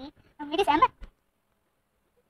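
A child's voice making a brief drawn-out vocal sound, not a clear word, about half a second in.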